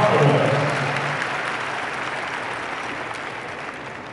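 Arena audience applauding, the clapping dying away steadily over a few seconds.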